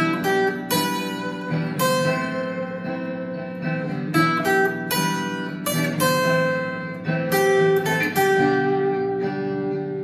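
Acoustic guitar picking a slow single-note melody over a strummed chord backing, with notes every second or so and a final note left ringing for the last few seconds.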